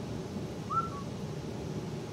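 A short whistle-like note that rises and then falls, about two-thirds of a second in, over a steady low room hum.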